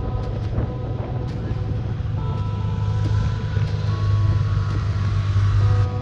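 Steady low rumble of wind and road noise on a moving camera's microphone while riding up a road, with a few faint steady tones underneath.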